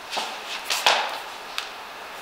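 A few short scuffs and knocks, the sharpest just under a second in, from shoes shifting on a wooden lifting platform as a lifter moves his weight onto one leg and slides the other leg out into a stretch.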